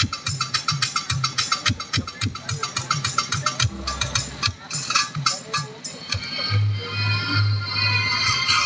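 Music played loud over a PA sound system: a fast percussion beat with short, punchy bass notes. About six seconds in it gives way to a held bass note under a sustained melody.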